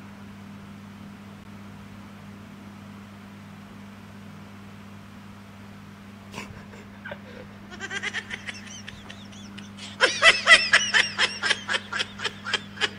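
A steady low hum of room noise, then laughter breaking out about eight seconds in and growing much louder near the end, in quick bursts of about four a second.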